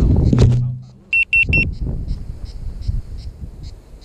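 About a second of loud rumbling handling noise as the quadcopter is set down, then three short, high electronic beeps in quick succession from the FPV quadcopter's beeper.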